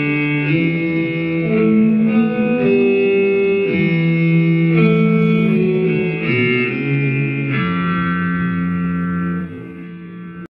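Hollow-body electric guitar playing a slow, arpeggio-based atonal jazz improvisation line, single notes ringing into one another. It settles on a long held final note that fades near the end.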